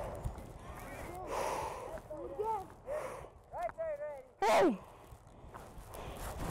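Scattered short shouts and calls from coaches and players on a football practice field as the players sprint off, the loudest a single falling yell about four and a half seconds in.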